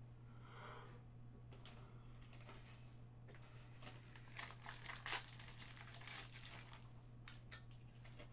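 Faint crinkling and crackling of a foil trading-card pack wrapper and cards being handled, in scattered bursts that are loudest about five seconds in. A steady low hum lies underneath.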